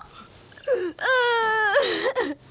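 A teenage girl wailing in distress. After a short cry about half a second in comes one long wail that slowly falls in pitch, then a brief cry at the end.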